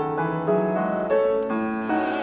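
Grand piano playing a short solo passage of chords, a new chord struck about every half second. The mezzo-soprano's voice comes back in at the very end.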